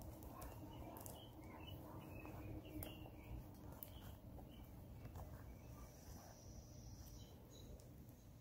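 Faint outdoor background with scattered short bird chirps, and soft clicks and rustles of suede leather and sinew being handled during hand stitching.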